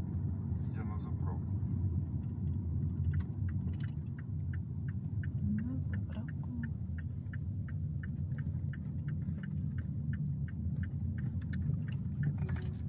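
Steady low road and engine rumble inside a moving car's cabin. From about three seconds in until near the end, a turn-signal indicator clicks evenly, about three times a second, as the car turns left.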